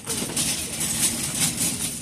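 Store shopping cart rolling across a hard floor, a steady noisy rumble of its wheels and wire basket.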